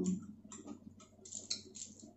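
Close-miked eating: chewing and mouth clicks, a string of short crackly ticks that come thickest about one and a half seconds in.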